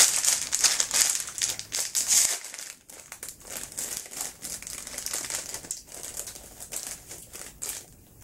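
Giant cookie's packaging crinkling as it is opened by hand, loudest over the first two seconds or so, then softer, irregular crackling.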